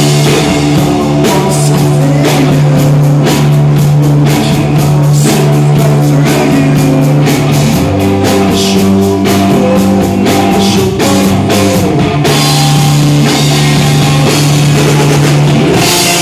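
Rock band playing live: electric guitar, bass guitar and drum kit with a sung vocal, loud throughout. The held low notes change about eight and twelve seconds in.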